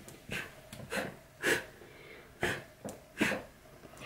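A person blowing out candles: five short, sharp puffs of breath, one after another.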